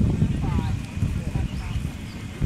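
Hoofbeats of a horse galloping on grass turf: a quick, uneven run of dull thuds.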